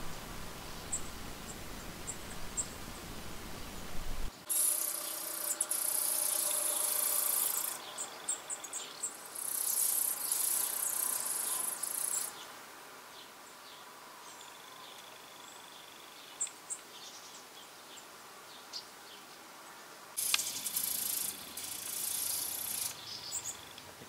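European robin nestlings begging as a parent comes to feed them: high, hissing calls in three bursts of a few seconds each, with a few faint short chirps between them.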